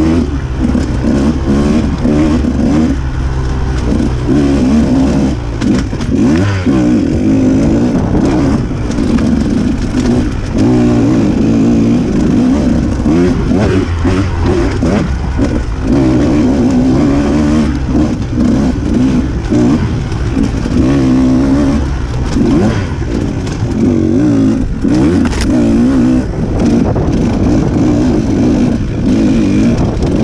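Off-road dirt bike engine ridden hard on a trail, its pitch rising and falling continuously as the throttle is worked on and off. There are occasional knocks.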